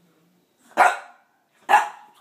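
Boston terrier giving two sharp, loud barks about a second apart, excited and hyped up after a bath.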